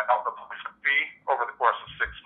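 Speech only: a recruiter talking continuously over a phone call, the voice thin and narrow like a phone line.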